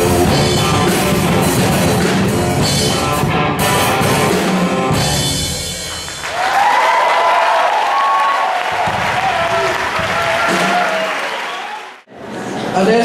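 Amateur rock band of electric guitar and drum kit playing a loud instrumental that stops about five to six seconds in. The audience then applauds and cheers, and the sound fades out near the end.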